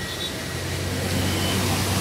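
Road traffic noise from a moving vehicle: a steady low engine hum under an even hiss of road noise, growing slightly louder toward the end.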